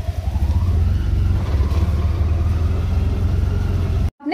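Auto-rickshaw engine running under load, heard from inside the open cab: a dense, fast-pulsing low rumble whose pitch rises over the first second as the rickshaw pulls away. A steady hiss of heavy rain and wet road runs underneath.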